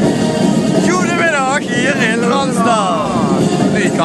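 A man's voice close to the microphone, from about a second in, drawn out and swinging widely up and down in pitch, over steady loud background noise.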